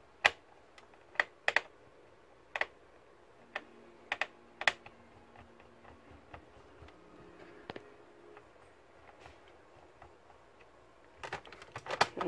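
Sharp, scattered clicks and taps of a screwdriver and small parts against an Asus laptop's metal hard-drive caddy and plastic case, about eight over the first eight seconds. Near the end comes a quick run of plastic clicks as the laptop's bottom cover is pressed into place.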